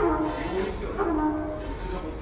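Trumpet playing a few short phrases of bending notes during a band's soundcheck, in a large room.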